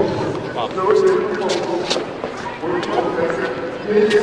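Indistinct chatter of several people talking over one another, with a few short clicks or knocks among the voices.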